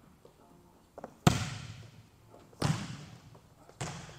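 A hand strikes a volleyball on an overhand serve: a sharp smack that rings on in the gym's echo. About a second and a half later comes a second, duller impact as the ball lands, also echoing, then a fainter knock near the end.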